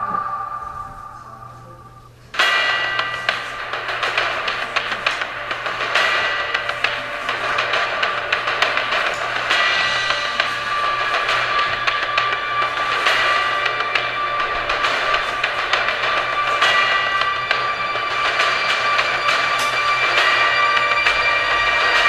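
A station ident's chime fades out over the first two seconds. Then loud, driving intro theme music for a TV news segment starts suddenly, with drums and cymbals hitting throughout.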